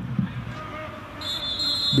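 Football referee's whistle: one steady, high-pitched blast lasting nearly a second, starting just past halfway, over low stadium background noise.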